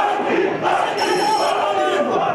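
A crowd of demonstrators shouting together in a chamber, many voices overlapping loudly. About halfway through, a shrill steady tone rises above the voices for most of a second.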